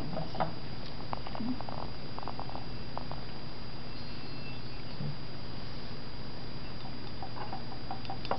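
Quiet room tone with a steady low hum and a thin high whine, and a few faint light clicks and ticks in the first three seconds.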